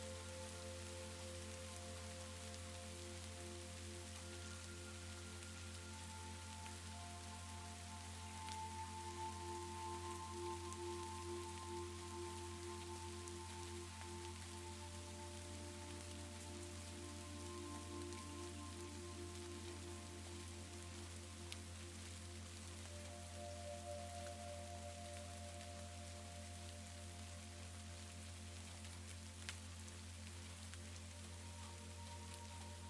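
Steady rain, with soft, slow background music of long held notes under it.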